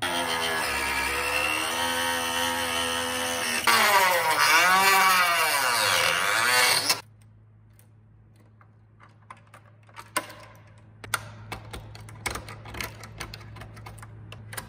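Handheld rotary tool running and grinding into hard plastic, its whine dipping and rising in pitch as it bites, louder from about four seconds in, then stopping abruptly. Light clicks and taps of plastic parts being handled and fitted follow.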